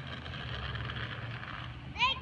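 Plastic wheels of a child's ride-on trike rolling on asphalt: a steady gritty rolling noise with a low rumble underneath, fading just before the end.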